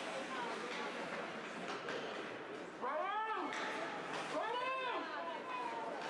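Two drawn-out, high-pitched shouts from a spectator, each rising then falling in pitch, about a second and a half apart, over the steady background noise of an indoor ice rink during play.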